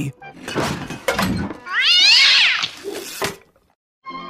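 A short laugh, then a loud cartoon cat yowl about two seconds in, its pitch rising and falling over about a second.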